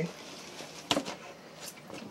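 Quiet room tone broken by one sharp click about a second in, with a faint tick shortly after.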